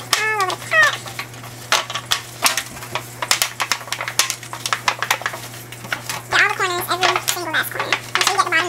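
Thin disposable aluminium foil pan crinkling and crackling as butter is rubbed around inside it with a paper towel: a busy run of short, sharp crackles.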